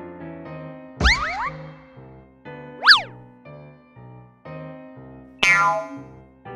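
Bouncy children's background music with cartoon sound effects laid over it: a thump followed by quick springy rising glides about a second in, a loud whistle-like glide that rises and falls around three seconds in, and a sharp pop with falling tones near the end.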